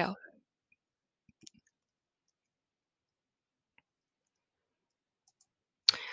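A few faint computer mouse clicks, scattered through near silence.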